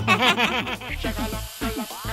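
High-pitched cartoon character voices: a quick run of short, bouncing, sped-up syllables like giggling chatter, turning into shorter falling blips, over a steady hiss.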